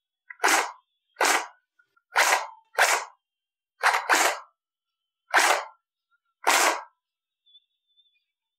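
Airsoft gun fired out of a window about eight times, at uneven gaps of roughly a second, each shot a short sharp pop.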